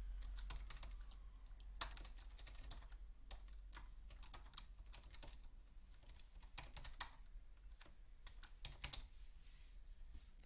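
Typing on a computer keyboard: a faint, irregular run of keystrokes as a query is typed out.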